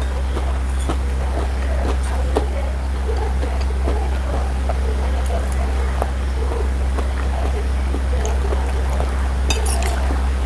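A person eating with a metal spoon from a ceramic plate, picked up close by a clip-on microphone: irregular mouth and chewing sounds with small spoon clicks against the plate, one sharper click near the end. A steady low hum runs underneath throughout.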